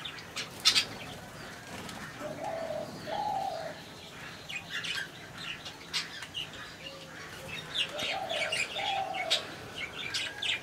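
Budgerigars chirping and chattering in short, sharp bursts. A lower two-note call comes twice: a couple of seconds in and again near the end.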